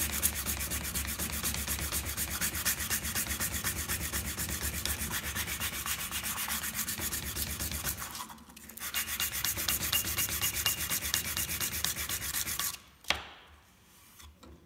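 Hand sanding the end grain of a wooden board with 240-grit glass paper wrapped around a wooden block: fast, steady back-and-forth strokes. The strokes break off briefly a little past halfway and stop near the end, followed by one sharp knock as the block is put down.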